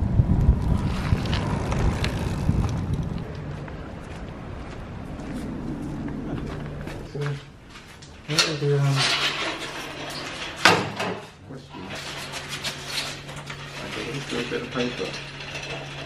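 Wind and road noise of a recumbent bicycle ride for the first few seconds. Then a recumbent bicycle is lifted and moved on a stand, its freewheel ticking and parts clicking and rattling over a steady low hum.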